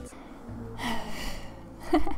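A woman's audible breath, a sharp intake about a second in, then the start of a laugh near the end.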